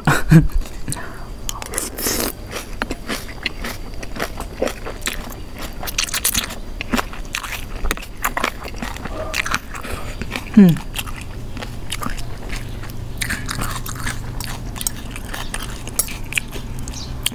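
Close-miked eating of a spicy Thai chicken-feet salad with instant noodles: a run of sharp crunches and wet chewing, with a spoonful of the dressing sipped from a spoon about halfway through.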